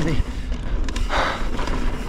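Mountain bike rolling down a dirt singletrack, with a steady low rumble of wind and trail noise on the action-camera microphone. A short hiss comes about a second in.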